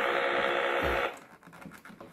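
Milton Bradley electronic toy spaceship's sound effect: a steady, buzzy electronic engine noise that cuts off suddenly about a second in as it is switched off, followed by faint clicks of the toy being handled.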